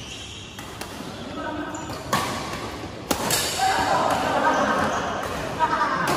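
Badminton rackets striking a shuttlecock during a doubles rally: a few sharp hits at irregular intervals, about a second apart, with people's voices calling out through the second half.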